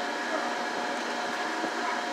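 A running fan whirring steadily, with a few constant tones held in the hum.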